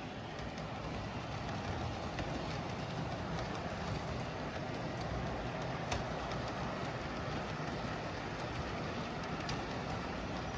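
Atlas Multi-Max auto carriers on an O-gauge model railway rolling past: a steady rumble of metal wheels on the rails, with light scattered clicks and a sharper click about six seconds in.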